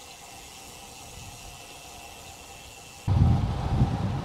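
A faint steady hiss, then about three seconds in a sudden loud, rough low rumble of wind buffeting the action-camera microphone as the bicycle rides along the road.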